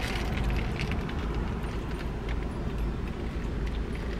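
Steady low rumble of a car idling, heard from inside the cabin, with faint crackles of a flaky croissant sandwich being chewed.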